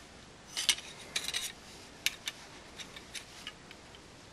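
Kershaw folding knives clicking and clinking against each other as they are set down and shifted into a row on a cloth: a few short, sharp metallic clicks in small clusters, fading to fainter ticks toward the end.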